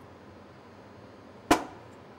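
A single sharp knock: the heel of a leather boot, with a wine bottle seated in it, struck once against a masonry wall to drive the cork out. It comes about one and a half seconds in and dies away quickly.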